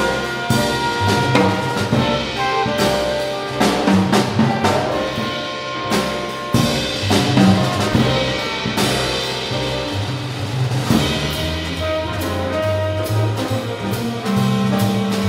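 Small jazz combo playing: trumpet and saxophone over upright bass and drum kit, with steady cymbal and drum strikes throughout.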